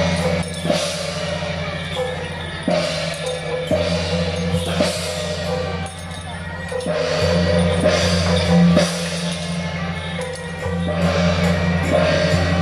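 Temple-procession percussion: large hand cymbals crashing and ringing with drum strokes, about every one to two seconds, over a low steady hum.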